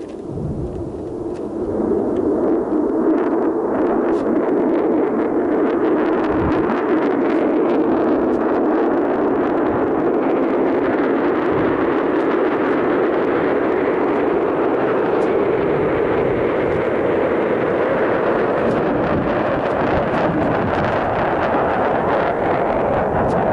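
Steady rushing wind noise over the weather balloon payload camera's microphone, swelling over the first two seconds and then holding steady.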